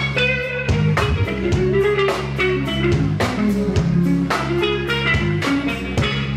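Live blues band playing an instrumental passage: lead electric guitar lines over a drum kit and bass, with a steady beat.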